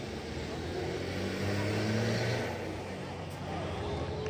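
A vehicle passing by, its engine noise swelling to a peak about two seconds in and then fading away.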